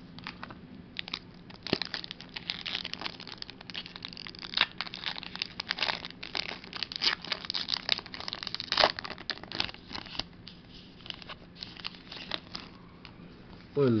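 Pokémon Burning Shadows booster pack's foil wrapper crinkling as it is torn open by hand. It makes a dense crackle that starts about a second in and thins out in the last few seconds.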